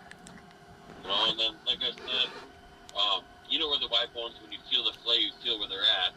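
Speech only: a man talking, starting about a second in, with no other clear sound.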